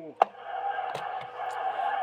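A sharp click as the Cobra 29 GTL CB radio's microphone is unkeyed, then a steady hiss of receive static from the radio's speaker.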